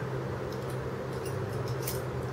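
Steady low hum in the room, with a faint click just before the end as a three-claw oil filter wrench is handled.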